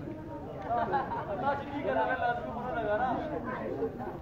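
Several people talking at once: indistinct overlapping chatter.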